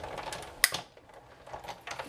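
Big Shot die-cutting machine being hand-cranked, the cutting plates rolling through its rollers, with one sharp click about two-thirds of a second in.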